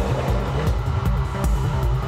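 Background music with a steady, strong low bass line and shifting pitched notes above it.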